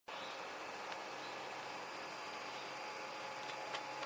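Steady low background hiss with a faint constant hum, broken by a couple of faint light clicks near the end.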